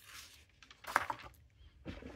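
Faint handling sounds as a fountain pen is moved over a paper notebook and taken away: a brief soft rustle at the start and a short sharp click about a second in.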